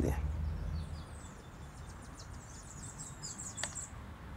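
Small birds chirping: a quick run of short, high chirps and twitters, with one sharp click near the end.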